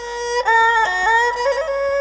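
Khmer traditional wedding music: a reedy wind instrument plays a sustained, ornamented melody with sliding pitch bends, rising in level about half a second in.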